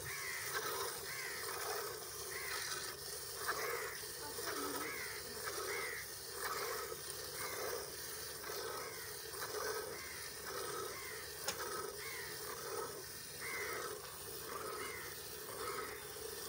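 Hand-milking a water buffalo into a steel bucket: milk squirting in rhythmic streams, alternating teats about one and a half squirts a second, each squirt a short arching swish against the milk in the pail. The streams are thick.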